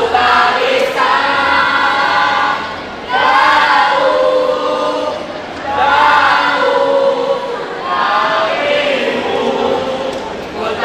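A troop of young scouts singing a yel-yel, a group cheer-song, together in unison, in phrases of two to three seconds each.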